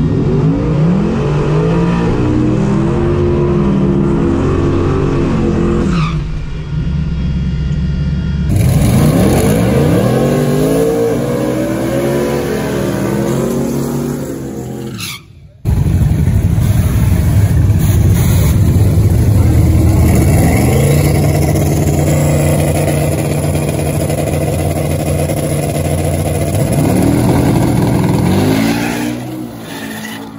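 Twin-turbo Camaro drag car's engine running and revving hard in the staging lanes, its pitch rising and falling. There is an abrupt cut about halfway through. Near the end the revs climb as the car pulls away, and the sound drops off.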